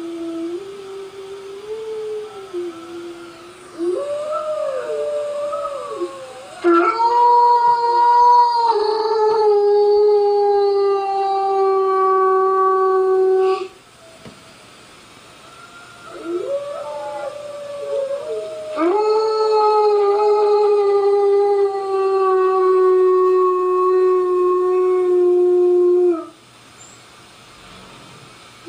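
Recorded wolf howls played back on a computer: several overlapping rising, wavering howls, then two long held howls of about seven seconds each with a short lull between them.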